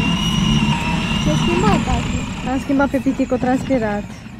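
A child's battery-powered toy ride-on motorcycle giving a steady high whine, with a small child's voice over it; near the end the child makes quick repeated sounds.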